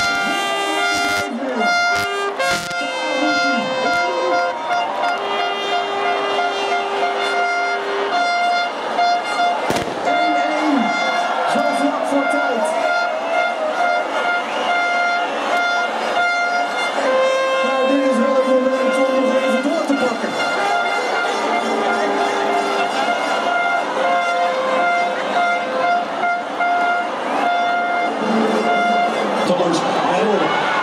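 Crowd of football supporters in an outdoor fan zone, with horns sounding held and repeated notes over voices shouting and singing; one sharp bang about ten seconds in.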